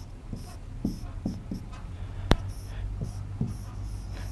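Stylus drawing on an interactive display screen: a run of short scratchy strokes and light taps as lines and boxes are drawn, with one sharp click a little past the middle.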